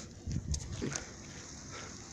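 Fire from a burning car crackling steadily, with two short low thumps about half a second in.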